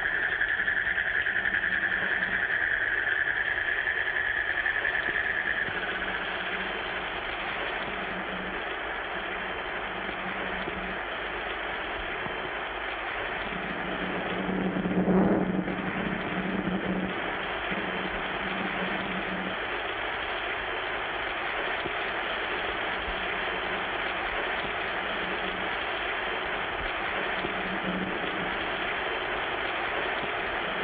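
Steady hiss-like background noise with no speech or music. A high steady tone runs for the first six seconds and then fades, and a low hum comes and goes. The sound swells briefly about fifteen seconds in.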